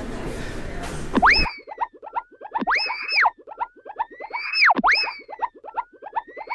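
Background room noise for about the first second and a half, then an abrupt cut to an added cartoon 'boing' sound effect. The boing is a springy swoop that shoots up in pitch and falls back, repeated about three times over a fast patter of short plucked notes.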